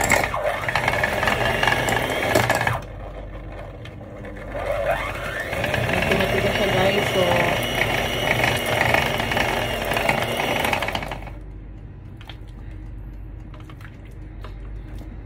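Electric hand mixer running, its beaters churning chunks of stiff, hard cream cheese. The motor runs loud for about three seconds, eases off briefly, runs loud again for about six seconds, then drops quieter near the end.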